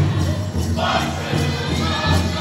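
Powwow drum and singers: a large drum struck in steady beats under high-pitched singing, with one high voice rising about a second in, over the noise of an arena crowd.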